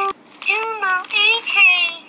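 Electronic Furby toy singing a high-pitched sing-song phrase in its synthetic voice, starting about half a second in and breaking off just before the end, with a click at the very start.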